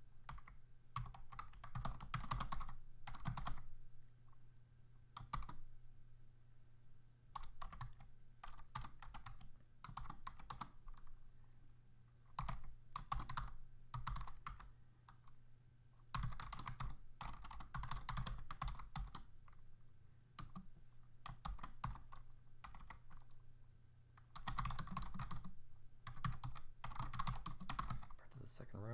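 Typing on a computer keyboard: quick runs of key clicks in bursts, broken by short pauses, as code is entered. A low steady hum lies underneath.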